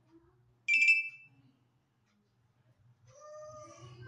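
A single short, high-pitched tone about a second in, the loudest sound here. Near the end comes a faint, wavering pitched call.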